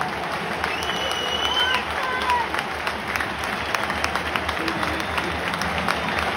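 A football crowd applauding, with sharp hand claps close by standing out over the wider clapping of the stand. A high call cuts through about a second in.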